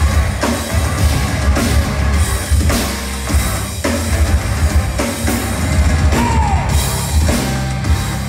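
Rock band playing live and loud, a steady drum-kit beat over heavy bass, heard from within the audience.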